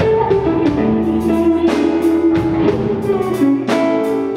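Live blues band playing, with an electric guitar carrying a melodic lead line over drums and bass.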